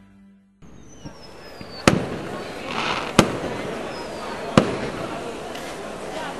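Fireworks sound effect: a high falling whistle, then three sharp bangs about a second and a half apart over a steady background hiss. The tail of the title music fades out at the very start.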